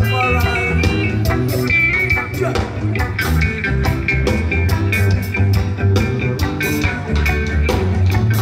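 A reggae band playing live through a festival PA, heard from out in the crowd: a steady drumbeat and bass line under electric guitar and a melodic lead.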